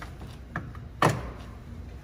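A light click about half a second in, then a sharper knock just after a second, from hands working the plastic trim at the top of a Toyota Sequoia liftgate opening.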